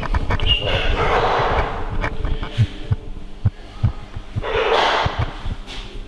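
Irregular low thumping and crackling from a faulty microphone, with two breathy rushes of noise, one about a second in and one near the end.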